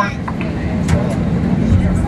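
Cabin noise of an Airbus A321-231 taxiing, its IAE V2500 engines running at idle: a steady low rumble.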